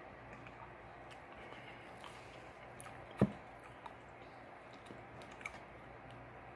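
Faint sipping and mouth sounds of someone tasting soda from a glass, with one sharp knock about three seconds in as the glass is set down on a plastic lid, and a few lighter ticks around it.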